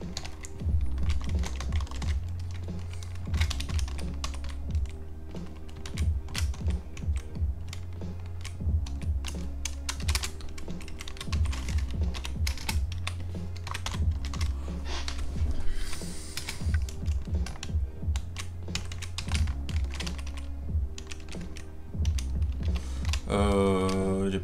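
Computer keyboard typing in irregular bursts of key clicks, over background music with a low, repeating bass line.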